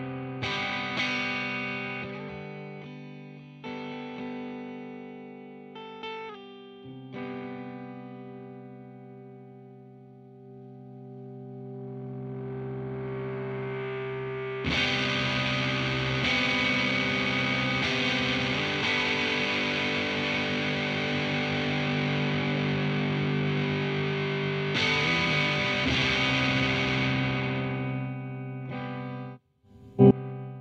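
Electric guitar through an Arion Metal Master (SMM-1), a Boss HM-2 clone distortion pedal, into a valve combo amp. For the first dozen seconds chords are struck and left to ring and fade in a lighter, cleaned-up tone. The sound then swells into louder, dense distorted chords held for over ten seconds, which cut off suddenly near the end.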